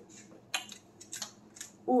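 A few light, sharp clicks from two dogs scrambling on a hardwood floor, about half a second, a second and a second and a half in.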